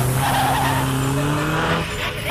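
Car sound effect: an engine running with a slowly rising note over a hiss of skidding tyres.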